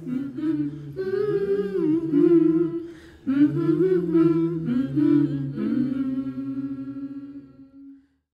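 Voices humming a slow melody without accompaniment, with held notes that glide between pitches; the humming fades out in the last second.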